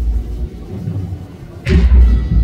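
Procession band's bass drum and crash cymbals striking together on the slow beat of a funeral march. A stroke from just before rings out at the start and the next lands about 1.7 s in, with the band faint between them.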